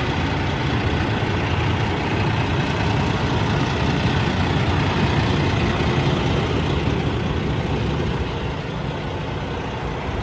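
Cummins ISX inline-six diesel of a 2016 International LoneStar semi truck idling steadily at operating temperature, a low even rumble that drops slightly in level near the end.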